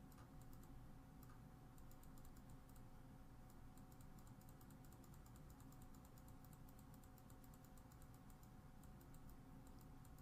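Near silence: faint room tone with a low steady hum and light, rapid clicking, like typing on a computer keyboard.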